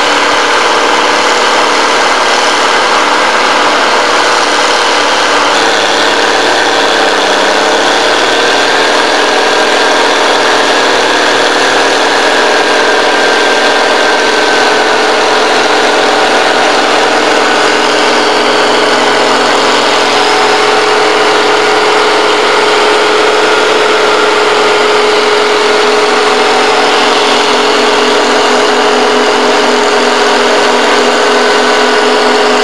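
Crawler dozer's diesel engine running loud and steady. Its pitch dips briefly about seven seconds in, then holds level.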